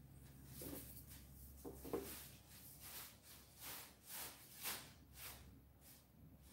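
Faint, soft swishes of a Chinese brush working ink. It touches the ink dish briefly about one and two seconds in, then makes a run of strokes on mulberry paper, about two a second, near the end.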